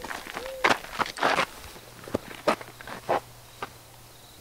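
Hurried footsteps on the forest floor: a handful of uneven steps through leaves and undergrowth, thinning out near the end.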